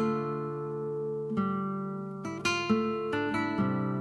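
Guitar intro of a slow song, with no singing yet. A chord rings out from the start, and from about a second and a half in, new chords and notes are plucked in quicker succession.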